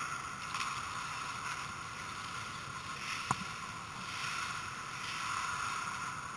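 Ice hockey play: skates scraping on the ice over a steady hiss, with one sharp knock about three seconds in.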